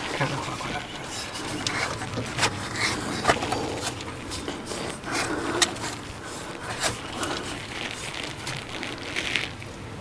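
Scattered light clicks, taps and scraping as an engine's mechanical cooling fan is turned by hand, being tried on its threaded mount.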